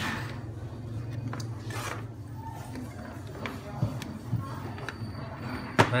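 Handling noise on a workbench: scattered small clicks and knocks of cables and RCA plugs being picked up and fitted, with one sharp click shortly before the end, over a steady low hum.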